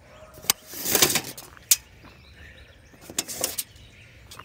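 Handling noise and footsteps scuffing on loose, freshly dug dirt while a tape measure is carried: two short scraping bursts and a couple of sharp clicks, with birds chirping in the background.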